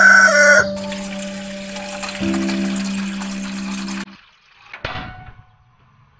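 A rooster crowing, the call ending about half a second in, over music of long held low notes that stop abruptly about four seconds in. Near the end comes a single sharp clack.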